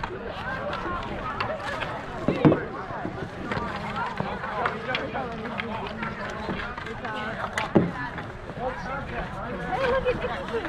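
Overlapping voices and shouts of players and onlookers at an outdoor street-hockey game, with sharp clacks of hockey sticks about two and a half seconds in and again near eight seconds.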